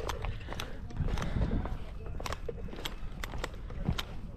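Scuba gear clinking and clicking irregularly as a diver walks in full kit, with a low rumble underneath.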